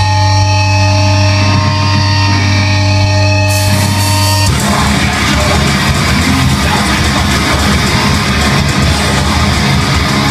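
Heavy band playing live at full volume: a single distorted low chord is held for about four seconds, then the full band comes in with dense distorted guitars.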